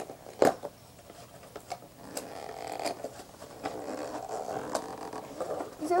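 Toy packaging being worked open by hand: a few sharp clicks, the strongest about half a second in, then steady scraping and rustling from about two and a half seconds on.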